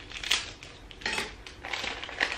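Package wrapping rustling and crinkling as it is handled, in two short bursts about a second apart.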